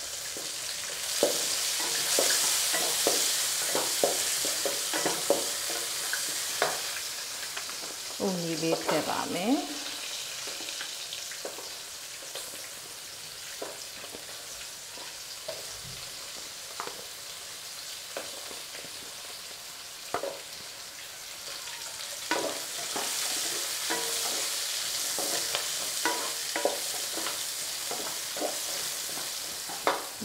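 Vegetables stir-frying in a hot stainless steel pot, a steady sizzle that swells as fresh carrot and cabbage go in, with quick clicks and taps of metal tongs against the pot as they are stirred.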